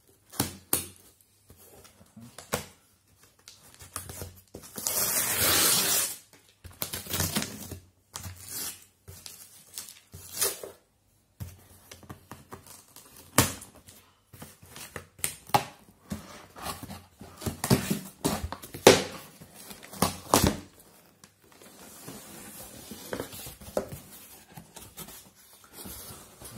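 A cardboard shipping box being cut open with scissors: the blade scraping and tearing along the seam, with a longer tearing stretch early on. Scattered sharp clicks and knocks follow as the scissors and flaps are handled, then a softer scraping of cardboard flaps being pulled open near the end.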